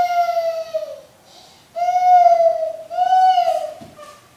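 A baby's voice: three drawn-out, sing-song vocal calls of about a second each, the first sliding down in pitch at its end.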